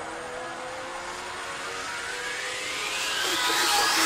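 Rising whoosh effect: a sweep that climbs steadily in pitch and grows louder toward the end, building up to the next cut.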